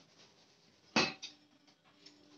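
A metal clink on a stainless-steel pot about a second in, ringing briefly, followed by a lighter second tap, as the chicken is being salted in it.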